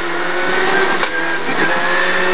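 Citroën Saxo rally car's engine running at high revs under full throttle, heard from inside the cabin, with a brief pitch change about one and a half seconds in as it shifts from fourth into fifth gear.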